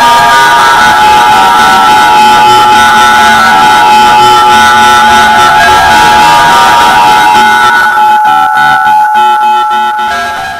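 Loud music made of dense, held tones; in the last two seconds it turns into a choppy, stuttering pulse.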